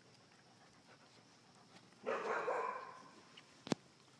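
A puppy gives one short bark about halfway through, in rough play with other young dogs. A single sharp click follows near the end.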